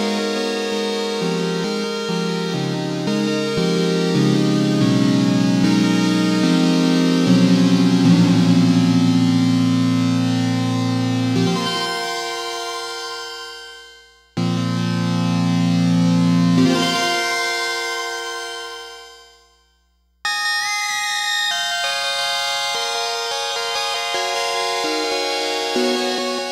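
Analog Four synthesizer playing sustained, slowly shifting chords. About twelve seconds in the sound fades away and then cuts back in suddenly; it fades out again and cuts back in abruptly about twenty seconds in.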